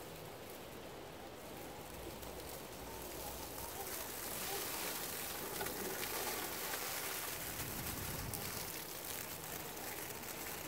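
Axial SCX10 II Cherokee RC crawler driving over dry fallen leaves: a crackling rustle of leaves under its tyres that grows louder as it comes closer over the first few seconds, then holds steady.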